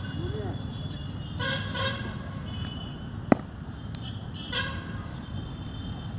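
A cricket bat strikes a hard cricket ball once with a sharp crack about three seconds in. Two short honks from a vehicle horn sound before and after it, over steady outdoor background noise.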